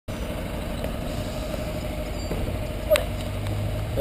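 Steady road-vehicle engine and traffic noise on a street, with one sharp knock about three seconds in.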